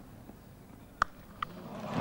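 A cricket bat striking the ball: one sharp crack about a second in, then a fainter click about half a second later. Crowd noise begins to rise near the end as the shot goes for four.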